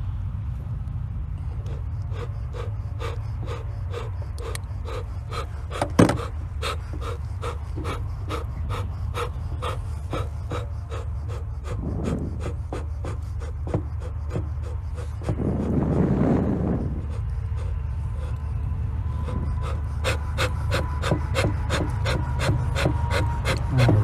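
Bee smoker's bellows pumped in a quick, even run of puffs while burlap fuel is lit inside the can to get the fire going, with a louder rush of noise about sixteen seconds in.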